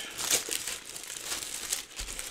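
Clear plastic bags holding a plastic model kit's sprues crinkling unevenly as they are handled and unwrapped.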